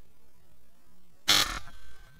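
A single sudden, loud burst of noise about a second in, dying away within half a second, followed by a faint steady high tone.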